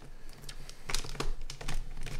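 Light, irregular clicks and taps of pens being handled and set down on a desk, about six in two seconds.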